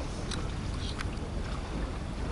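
Steady low rumble and hiss of wind on the microphone, with a few faint clicks.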